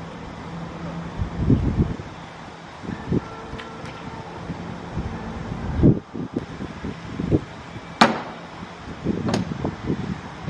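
A car's front boot lid shut with one sharp slam about eight seconds in, after several dull knocks and thumps of things being handled in the front boot.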